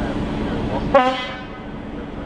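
A train horn gives one short toot about a second in, over the steady hum of a train running, heard from inside a carriage.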